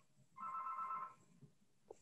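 A short, faint electronic ringing tone, two steady pitches sounding together for just under a second, starting about a third of a second in.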